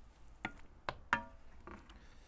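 Wooden spoon knocking against a ceramic bowl and frying pan as pasta is dished out: three sharp knocks in quick succession, the third ringing briefly, then a softer knock near the end.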